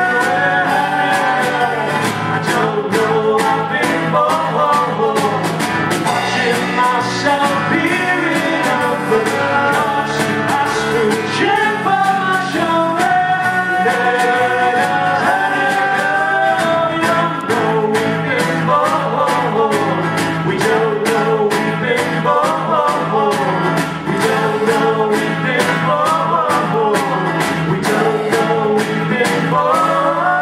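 A live band playing: acoustic guitar, upright double bass and a small drum kit keeping a steady beat, with voices singing over it.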